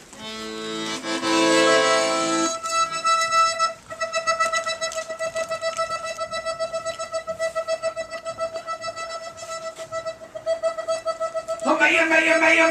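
Piano accordion playing a held chord, then from about three seconds in a single long note that pulses quickly and evenly, with fuller chords coming in near the end.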